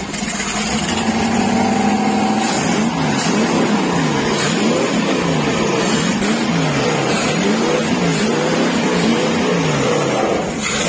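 Carbureted V-type inboard boat engine with a four-barrel carburetor running: a steady idle for the first couple of seconds, then the throttle is blipped repeatedly, the revs rising and falling about once a second.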